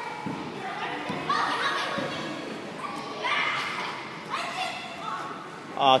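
Background chatter of children's voices echoing in a large gymnasium hall.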